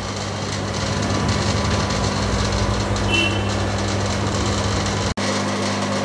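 Steady buzzing hum of aquarium air pumps with the rushing bubble of aeration in the tanks, briefly cut off just after five seconds in.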